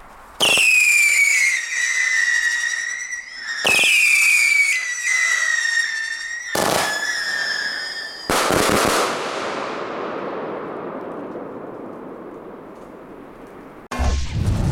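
Canis 25-shot consumer firework battery firing three whistling shots in turn, each a sharp pop followed by a shrill whistle that falls in pitch over two to three seconds. About eight seconds in, a loud burst goes off and its noise fades away over the next several seconds.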